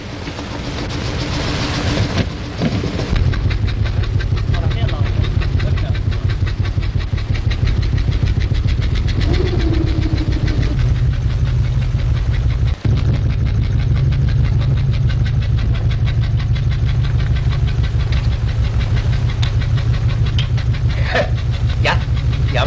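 Small motorboat engine running with a fast, even beat, coming in about three seconds in after a short rushing, hissing noise.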